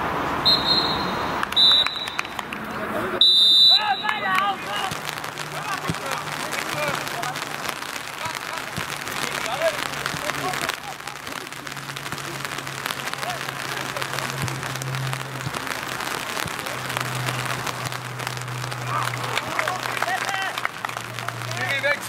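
Referee's whistle blown in three short blasts within the first four seconds, followed by players' scattered shouts across the pitch.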